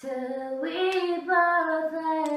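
A woman singing unaccompanied, holding long notes that step up in pitch about half a second in.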